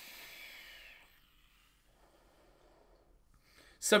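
A draw on a vape, a Wasp Nano atomiser fired at 65 watts on a 0.3 ohm coil: an airy hiss of air pulled through the atomiser for about the first second, then near quiet and a faint exhale of the vapour.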